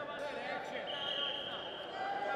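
Men's voices calling out across a large arena during a Greco-Roman wrestling bout. From about halfway in comes one high, steady squeak lasting about a second, typical of a wrestling shoe sliding on the mat.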